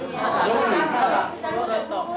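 People talking, with more than one voice at once.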